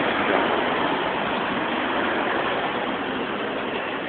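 Steady background noise of an engine running, with no distinct events.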